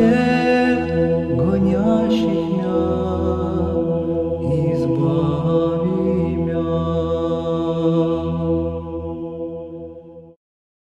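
Closing theme music: Orthodox-style sung chant over a steady low drone, the melody moving above the held note. It fades out near the end.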